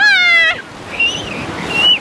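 A young child's high-pitched squeal, rising then falling, lasting about half a second, then the wash of small waves breaking at the water's edge, with a second short, high squeal near the end.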